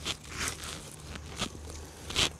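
Hand pushing loose forest soil and dry leaf litter back over a dug-up root: a few short, soft scrapes and rustles.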